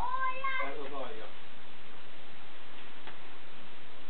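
A high-pitched, drawn-out cry held for about half a second, then a shorter, lower wavering one. After that there is only quiet room sound with a faint click about three seconds in.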